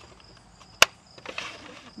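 A single sharp click about a second in as the plastic-bodied RC helicopter is handled.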